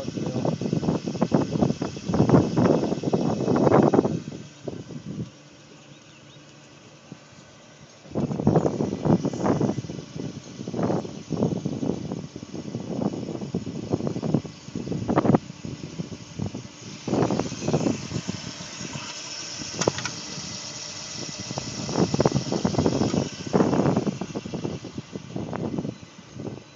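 Wind buffeting a phone's microphone in irregular gusts, with a lull of a few seconds about five seconds in.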